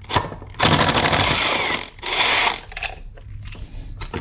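Ryobi cordless drill/driver spinning out a screw from a distributor cap, in two runs: about a second and a half, a brief pause, then half a second more. A few small clicks of the tool and parts follow.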